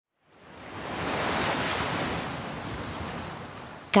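Ocean surf: one wave swells up over the first second or so, then washes out and fades away slowly.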